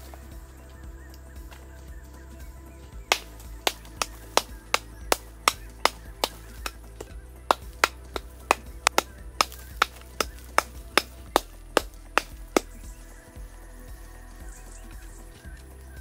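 A long-handled metal hoe striking hard, stony ground again and again, about two to three sharp blows a second, starting about three seconds in and stopping a few seconds before the end, over steady background music.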